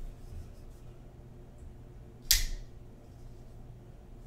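Custom Knife Factory Gratch flipper folding knife flipped open, its blade snapping into the locked position with one sharp metallic click about two seconds in.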